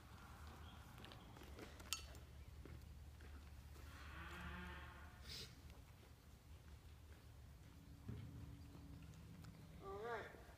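Near silence over a low steady hum, broken about four seconds in by one faint, drawn-out call from a large farm animal.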